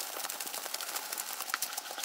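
Tarot cards being mixed face-down by hand on a tabletop: a steady rustle of card backs sliding over one another, with many small quick clicks.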